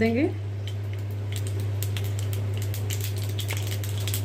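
Mustard seeds crackling and popping in hot oil in an appe pan: scattered small pops that grow thicker from about a second in, over a steady low hum.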